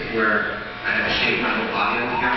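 Electric razor buzzing as it shaves body hair, mixed with voices, heard through a hall's loudspeakers.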